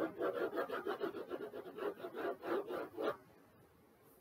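Stylus scrubbing rapidly back and forth on an interactive whiteboard's surface while shading in a region, about five scratchy strokes a second, stopping about three seconds in.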